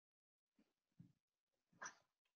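Near silence, with a few faint short sounds in the second half, the strongest near the end: the embedded video's own audio barely coming through.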